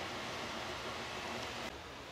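Steady background hiss of workshop room noise, with no distinct event; near the end it drops slightly and turns duller.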